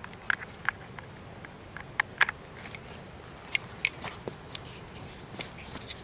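Scattered light clicks and taps of small plastic gadgets and USB plugs being handled, a USB cable being pulled out and plugged in.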